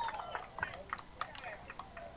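Faint background ambience picked up by the broadcast microphones between pitches: scattered soft clicks, with a faint distant voice near the start.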